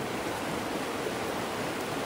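A fast river rushing over boulders and rocks: a steady, even rush of white water.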